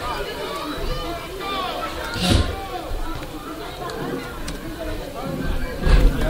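Background chatter of people at a football game, several voices talking over one another, picked up by an open commentary microphone with a low rumble underneath. A short noisy bump on the microphone about two seconds in is the loudest moment.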